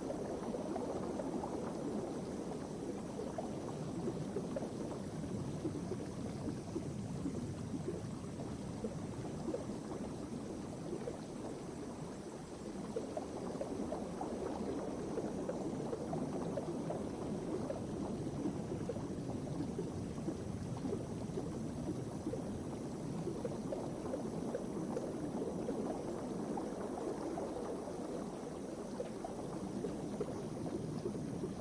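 Steady bubbling, trickling water sound, even throughout, with a slight dip about twelve seconds in.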